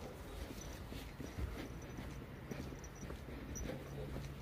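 Low rumbling and rustling handling noise from a soft pet carrier bag being carried along, with scattered faint clicks and a few short, faint high chirps.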